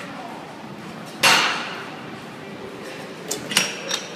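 Seated calf raise machine loaded with 40 kg of iron weight plates clanking down hard about a second in, followed by a brief ringing. Near the end come a few lighter metallic clinks from the machine.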